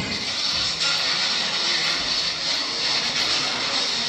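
Steady rushing jet-engine noise, like an airliner cabin sound effect played over the hall's speakers, with no clear tune. It eases off slightly near the end.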